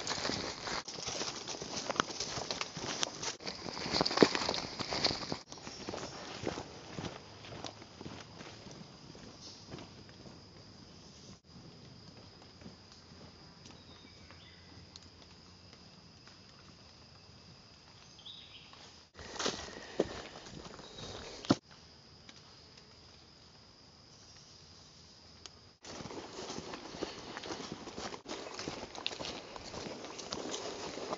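Footsteps on dry leaf litter along a forest track, crunching steadily in the first few seconds and again near the end, quieter through the middle, with a couple of sharp knocks a little past the middle.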